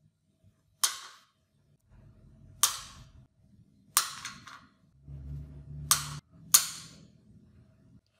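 Small steel screws set down upright one at a time on a steel workbench top: five sharp metallic clicks with a short bright ring, a second or two apart, the last two close together.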